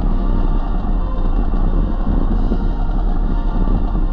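Loud, steady deep rumble with music over it, the soundtrack to a dramatic name-reveal animation.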